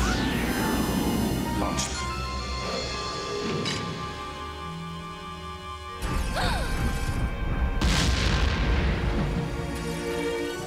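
Cartoon background music under explosion sound effects: a sudden boom at the start, then a longer deep rumbling boom from about six seconds in, each with a falling whoosh.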